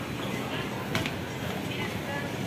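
Steady background noise of a busy indoor shopping centre around an escalator, with faint distant voices and one short click about a second in.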